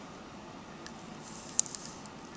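Faint hiss with a few light, sharp clicks about a second and a half in, the loudest a single tick: the foil DPD reagent pillow tapping against the rim of a glass sample vial as the powder is poured in.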